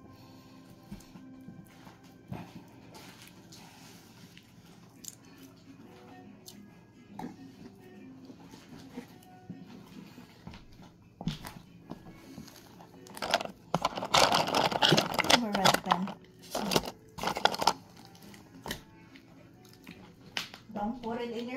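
Glitter slime being kneaded and squeezed by hand, over faint background music. About two-thirds of the way in, the squelching and crackling turns loud for several seconds.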